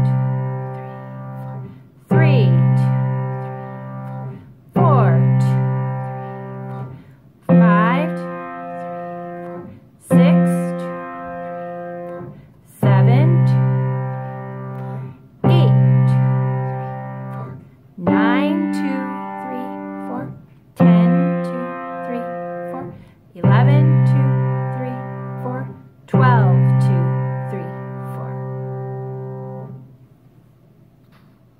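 Kawai piano playing a 12-bar blues left hand in C: an open fifth (root and fifth) struck once per measure, eleven slow, evenly spaced strikes each left to ring and fade, the bass moving from C to F, back to C, up to G, down to F and back to C.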